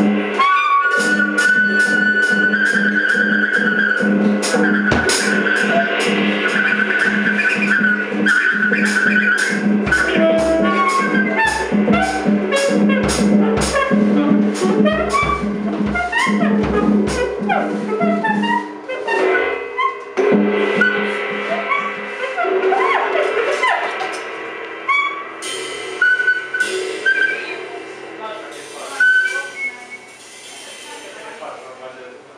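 Tenor saxophone and drum kit playing jazz together: held and wandering sax lines over quick, regular stick strokes on drums and cymbals, with bass-drum thumps in the middle. The playing thins out and gets quieter in the last third.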